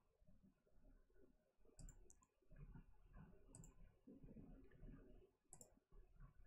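Near silence with a few faint clicks at a computer: a pair about two seconds in, one at about three and a half seconds, and another pair near the end.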